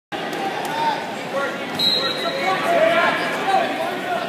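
Several voices of people talking and calling out in a large gymnasium hall. A brief high steady tone sounds about two seconds in.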